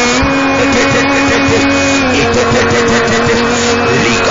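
Loud church worship music with a held note that steps down slightly about halfway through, over a dense wash of many voices: a congregation praying aloud together.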